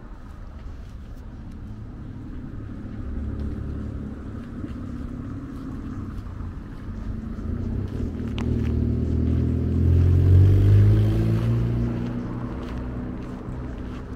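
A motor vehicle's engine driving past, growing louder to its loudest about ten seconds in, then fading.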